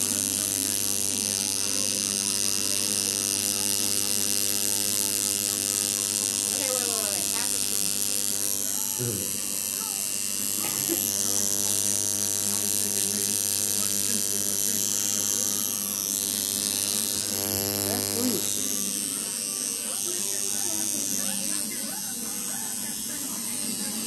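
Electric tattoo machine buzzing steadily while it works ink into the skin of a neck, with faint voices in the room.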